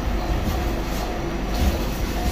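Steady low rumble of room ventilation machinery with a faint even hum over it.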